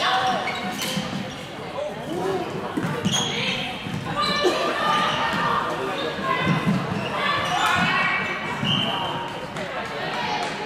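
Floorball being played on an indoor court in a large, echoing sports hall: shoes squeaking on the court floor, plastic sticks and ball clicking, and players calling out. The squeaks come in clusters about four seconds in and again near the end.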